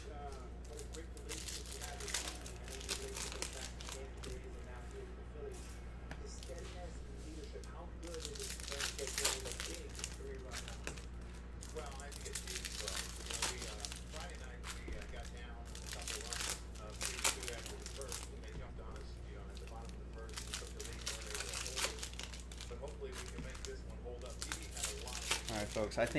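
Foil wrappers of 1996-97 Fleer basketball card packs crinkling and tearing as they are opened by hand, in irregular bursts of rustling, over a steady low hum.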